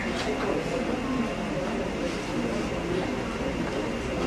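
Indistinct murmur of many voices, a crowd of people talking over one another.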